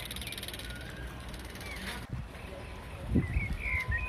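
Outdoor ambience with a few short bird chirps, most of them near the end, over a steady low rumble of wind on the microphone; low thumps of handling or footsteps come in about three seconds in.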